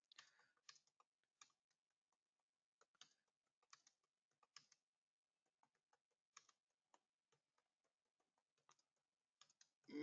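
Faint computer keyboard typing: soft, irregular key clicks as a sentence is typed.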